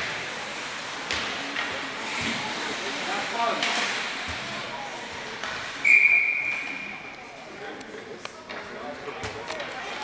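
Referee's whistle blown once about six seconds in: a single high blast that fades out over about a second. Around it are the chatter of a rink crowd and occasional sharp clacks of sticks and puck.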